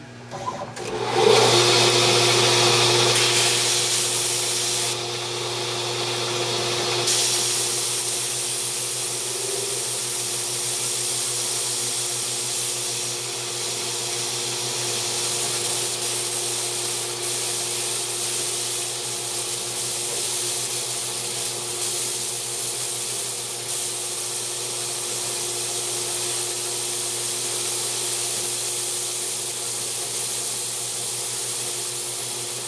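A steady blast of compressed air hissing from a copper tube onto titanium stock spinning in a Grizzly G0602 CNC lathe at 1200 rpm, over the lathe's steady motor hum. The air starts about a second in and stands in for flood coolant, keeping the cut cool.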